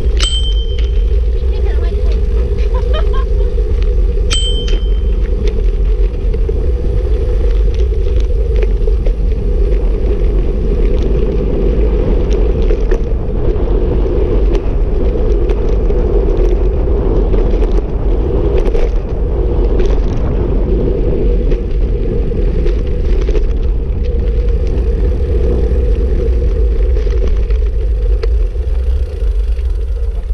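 Steady wind and road rumble on a bicycle-mounted action camera while riding along a paved path. A bicycle bell rings once at the very start and again about four seconds in.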